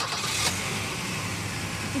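Car engine just started and running at idle: a louder rush of noise in the first half second settles into a steady low hum.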